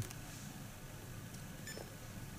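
Faint short electronic beep from a Phocus3 Smart Recorder handheld about 1.7 s in, as a key press switches it from infrared to radio transmission, over quiet room tone.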